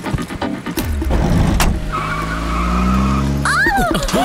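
Car engine revving, rising in pitch, with tyres squealing, over action-film background music.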